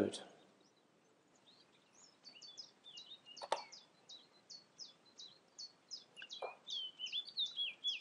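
Faint bird song: a quick series of short, high chirps, each dipping in pitch, about three a second, starting about two seconds in. A single sharp click comes a little after the middle.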